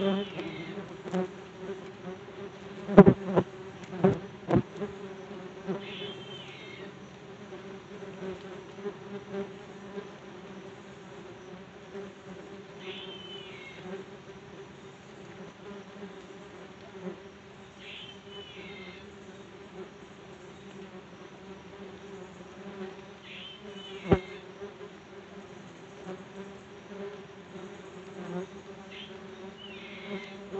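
Yellow jackets buzzing around the phone in a steady drone, with a few sharp taps close to the microphone about three to four and a half seconds in and again near twenty-four seconds.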